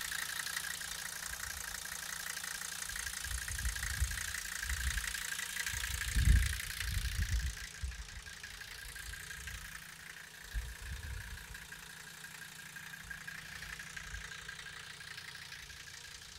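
1984 Mercedes-Benz 300D's five-cylinder turbodiesel idling with a steady, fast clatter, which grows fainter after about eight seconds. There is a low thump about six seconds in.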